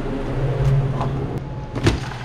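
Steady low electric hum of store refrigeration coolers, with one sharp knock near the end.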